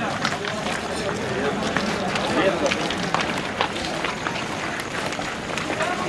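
Footsteps of a group of people walking together, with indistinct men's voices talking in the background.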